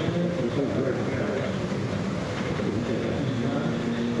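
Muffled, indistinct speech from a man addressing the room, heard dull and far off over a steady low background hum.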